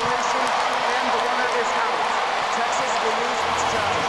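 Ballpark crowd cheering, a loud, steady wash of many voices.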